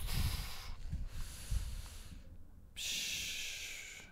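A man breathing audibly close to a microphone during a pause in speech: a breath of about two seconds, a brief gap, then a second, softer breath.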